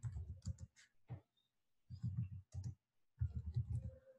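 Computer keyboard keys being typed in about four short bursts of clicks, with brief pauses between them.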